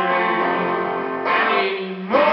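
Electric guitar chords strummed and left ringing, with a fresh strum a little past a second in that then fades.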